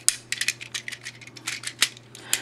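Hard plastic parts of a Diesel Ressha toy train clicking and clacking as they are pulled out and swung into place: a quick, uneven string of small clicks, the sharpest near the end.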